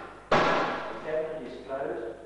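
Metal door of a laboratory test cabinet slammed shut: one loud bang about a third of a second in, ringing away briefly.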